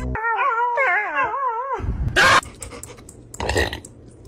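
A golden retriever howling in a wavering, warbling pitch for nearly two seconds. Then come two short, loud noisy bursts, the first just after two seconds and the loudest, the second about a second later.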